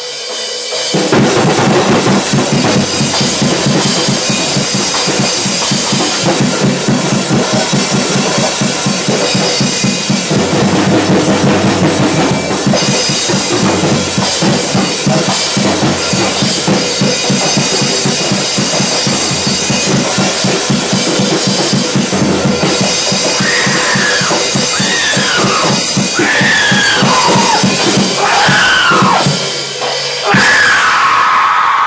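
A band playing loud, driving music with a full drum kit, starting right after a spoken count-in. In the last several seconds, high falling swoops ride over it.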